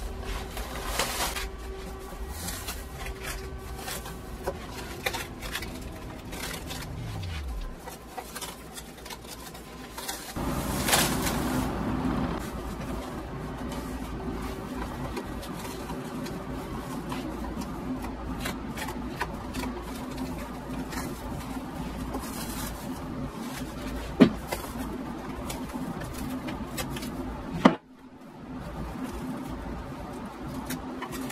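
Nylon pantyhose being peeled off plastic wrap: a sticky, crackling rustle as the fabric comes away from the film and clings to it, with a couple of sharper snaps near the end.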